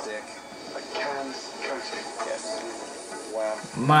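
Quieter speech from the TV show playing in the background, with a man's voice coming in loud and close near the end.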